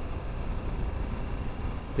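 BMW G 310 GS single-cylinder motorcycle ridden slowly on a gravel road: a steady low rumble of engine, tyres on gravel and wind, with no clear engine note.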